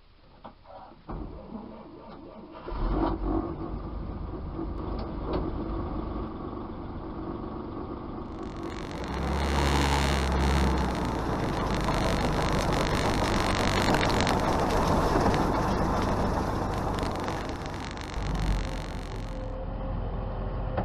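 Old Dodge military truck's engine being started: a few clicks, then it catches a little under three seconds in and settles into a steady run, louder from about halfway through.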